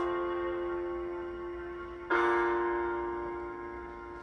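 Keyboard playing slow piano chords: one is struck at the start and another about two seconds in, and each rings and fades slowly.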